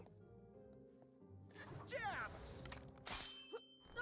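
Animated-series soundtrack: sustained background score music, broken a little after three seconds in by a single sharp whack or crash of an impact effect.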